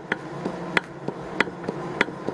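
Subaru 2.5L SOHC connecting rod rocked by hand on its crankshaft journal, giving a few light metallic clicks about every half second. The clicks come from a little looseness at the big-end bearing, worn from oil starvation: the slight play behind a mild rod knock.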